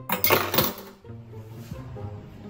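Metal cutlery clattering against dishes in a stainless steel sink: one brief jangling burst near the start.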